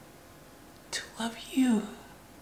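A woman's voice singing a short phrase, starting about a second in with a sharp hiss and ending with a fall in pitch, over faint room tone.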